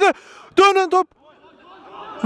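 Speech only: a man's commentary voice says one short word about half a second in, with low background noise around it.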